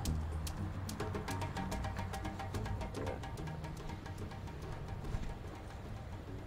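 Soft background music of sustained held notes, with many faint short ticks running through it.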